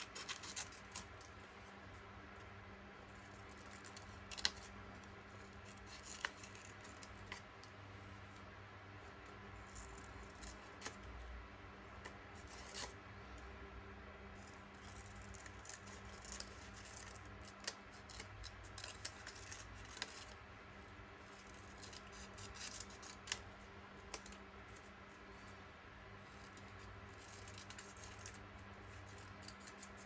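Small scissors fussy-cutting around a printed paper image: faint, irregular snips and paper rustling over a low steady hum.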